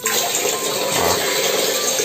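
Water from a plastic tap running into a drinking glass and spilling over into a sink: a steady splashing rush that starts abruptly.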